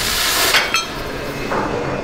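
Oxy-fuel cutting torch hissing steadily as it cuts through steel plate, with a brief metallic clink about two-thirds of a second in; the hiss thins out near the end.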